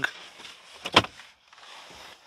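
Wooden bed platform being pulled out of a couch frame, sliding with a rustling scrape and one sharp knock about a second in, as the couch converts into a bed.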